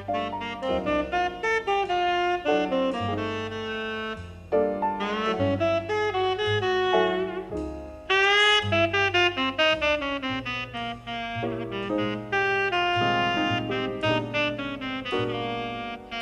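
Jazz tenor saxophone playing a slow melody, accompanied by piano and double bass.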